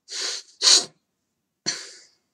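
A man's short, forceful bursts of breath, like sneezes: two quick noisy bursts in the first second, then a sharper one near the end that fades away.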